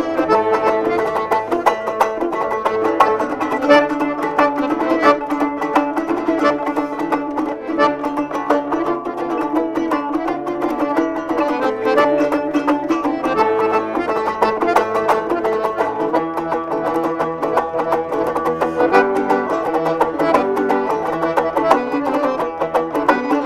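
A Kyrgyz komuz, the three-string fretless lute, played with quick strummed and plucked notes. A piano accordion accompanies it with held chords.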